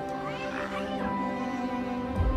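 A cat meows in the first second, a short gliding call, over steady background music.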